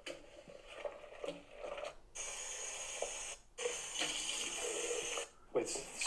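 Faint playback through a small device speaker of a man's voice talking over running tap water, in two hissy stretches separated by a short gap.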